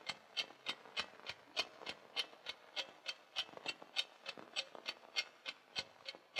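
Steady, even ticking: short sharp clicks at about three a second, fairly faint.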